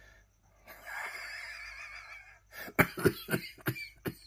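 A man laughing hard: a long wheezing, near-silent breath for about a second and a half, then a quick string of about seven short laughing gasps.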